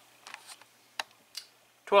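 A few short, sharp clicks from a computer mouse, the loudest about halfway through. A man's voice begins near the end.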